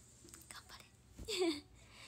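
Mostly quiet, with one brief, soft, breathy vocal sound from a young woman a little past halfway, falling in pitch.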